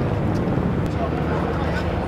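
Steady low engine drone with voices mixed in.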